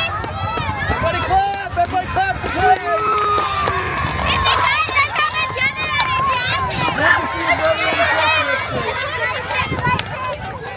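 A crowd of children talking and calling out at once, many high voices overlapping, with a steady low rumble underneath.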